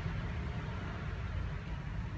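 Steady low rumble of outdoor background noise with a faint even hiss above it; no distinct events.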